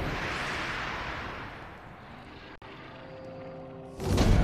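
A cinematic whoosh sound effect: a rushing noise that fades over about two seconds, then a quieter hum with a faint held tone. A very brief dropout comes about two and a half seconds in.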